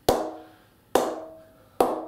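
A leather cricket ball bounced three times, about a second apart, on the face of a grade 1 English willow BAS Bow 20/20 cricket bat. Each strike is a sharp knock with a short ringing ping, the bat's response that is rated excellent.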